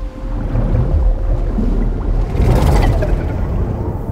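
A deep rumble of rushing water that swells about two and a half seconds in, then turns dull and muffled as if heard underwater near the end.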